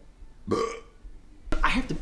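A man burps once, briefly, about half a second in.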